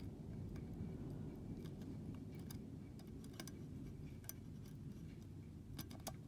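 Faint light ticks, roughly one a second, from metal tweezers and enamelled copper wire tapping against a circuit board as toroid leads are fed through its holes, over a low steady hum.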